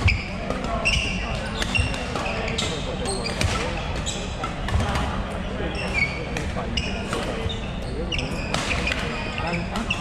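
Badminton play: sharp racket strikes on the shuttlecock at irregular intervals and short high squeaks of court shoes on the wooden floor, with people talking in the background.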